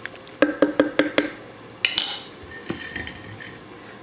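Wooden spoon stirring tortellini soup in a ceramic crock pot, knocking against the stoneware insert about five times in quick succession with a short ringing tone. A single sharper clink follows about two seconds in.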